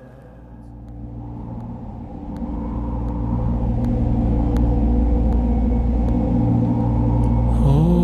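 Deep cinematic rumble swelling in over a low sustained drone, growing steadily louder through the first few seconds. Near the end a pitched tone glides upward into held musical notes.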